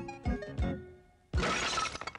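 Jaunty cartoon theme music of plucked and keyboard notes over a bouncing bass. It stops, and about a second and a half in comes a sudden crash like glass shattering, followed by scattered tinkling.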